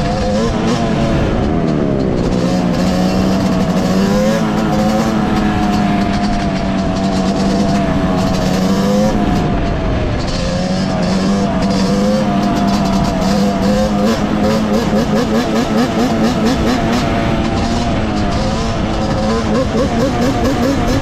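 Yamaha Banshee 350's two-stroke twin engine running under way, its pitch rising and falling as the throttle is opened and closed.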